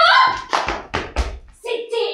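A young woman's voice exclaiming, then a quick run of about half a dozen sharp hand claps, and her voice again near the end.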